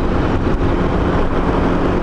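Honda Biz's small single-cylinder four-stroke engine running steadily at cruising speed, heard from the rider's seat with steady wind and road noise.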